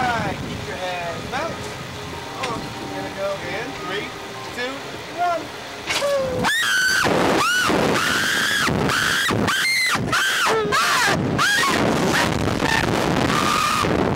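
A man and a woman on a Slingshot reverse-bungee ride scream and laugh once the seats are catapulted into the air, about six seconds in, with loud, high cries that rise and fall. Before the launch there is only low chatter.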